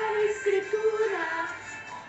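A religious song: a voice singing a melody in long held notes over musical accompaniment.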